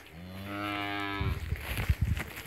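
A young dairy heifer mooing once, a single call of about a second that rises slightly in pitch at the start. It is followed by a run of loud low thumps, the loudest near the end.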